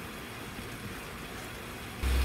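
Steady faint background hum and hiss with no distinct events.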